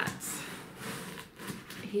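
A pause in a woman's speech: a short breath in, then faint room noise, with her voice starting again near the end.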